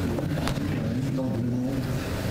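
Low, indistinct voices murmuring, with a single sharp click about half a second in.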